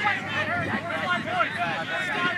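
Several people's voices talking and calling out at once, indistinct and overlapping.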